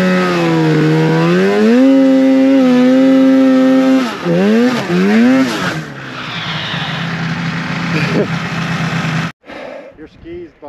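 Arctic Cat Mountain Cat snowmobile engine running hard under throttle, its pitch dipping and then climbing and holding steady. About four seconds in it gives two quick revs, then drops to a lower, steady idle; the sound cuts off suddenly near the end.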